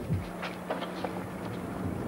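A steady low mechanical hum, one unchanging tone starting just after the beginning, over outdoor wind and background noise.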